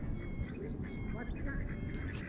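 Steady low rumble of outdoor background noise, with faint short high chirps and faint distant voices.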